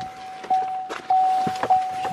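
A vehicle's warning chime from the cab with the driver's door open: one steady electronic tone that repeats about every half second, over rustling and a few light knocks of handling and footsteps.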